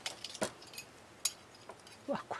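A few light metallic clicks from the steel needles of a Brother knitting machine's needle bed as hands handle the needles, the two sharpest about half a second and a little over a second in.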